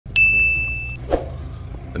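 A single bright, bell-like ding, held just under a second and then cut off, over the steady low rumble of street traffic.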